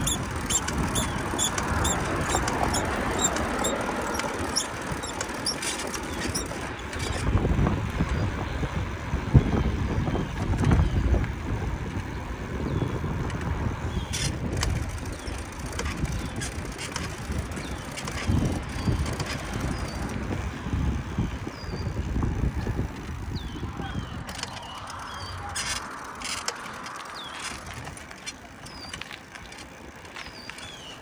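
Bicycle riding noise: irregular wind and road rumble on the handlebar-mounted microphone, with intermittent short high squeaks. Traffic swells past near the start and again near the end.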